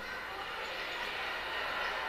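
Steady wind and engine noise picked up by a camera riding on a motor scooter moving through city traffic.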